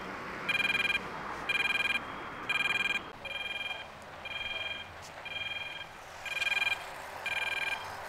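Electronic beeps from a pedestrian crossing signal, a short high tone repeating about once a second, over faint traffic noise.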